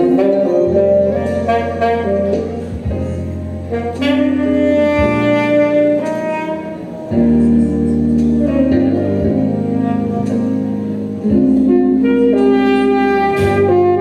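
Saxophone playing a jazz melody over a sustained bass line, amplified through a PA.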